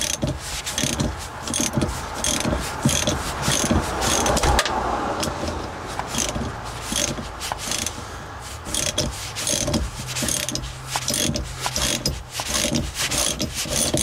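Hand ratchet clicking in a long run of strokes as it turns a 15 mm socket on the upper mounting nut of a rear shock absorber.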